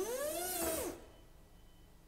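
An electric forklift's motor whining for about a second, rising and then falling in pitch, with a hiss above it.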